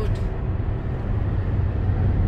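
Steady low rumble of road and engine noise heard inside a car's cabin while it cruises on a highway.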